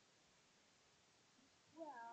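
Near silence, then near the end a single short vocal call whose pitch rises and then falls.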